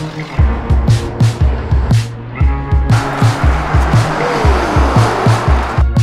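Background music with a steady kick-drum and bass beat. From about halfway a noisy whoosh with a falling tone swells over it and cuts off sharply just before the end.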